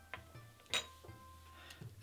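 Faint background music, with a sharp click about three-quarters of a second in as a small metal spoon is set down on a wooden chopping board, and a couple of fainter taps before it.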